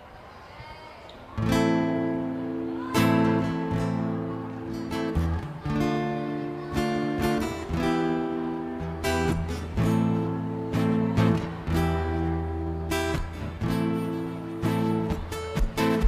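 Acoustic guitar strumming chords, starting about a second and a half in after a brief hush, as the instrumental introduction to a song.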